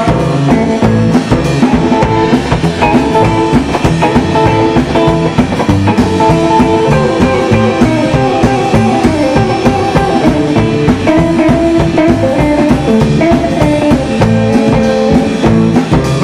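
Rockabilly band's instrumental break: an electric guitar plays the lead line over an upright double bass and a drum kit keeping a steady driving beat, with no singing.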